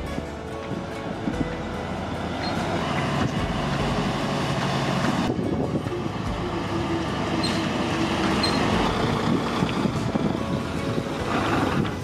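A semi truck's diesel engine running as the tractor-trailer drives along and turns in, with a steady, dense rumble throughout.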